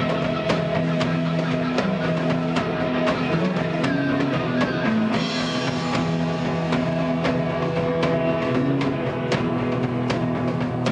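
Live rock band playing an instrumental passage: electric guitars and bass over a drum kit keeping a steady beat.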